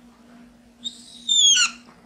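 Whiteboard marker squeaking against the board as a line is drawn: a high squeal starting a little under a second in, loudest briefly and falling in pitch as the stroke ends.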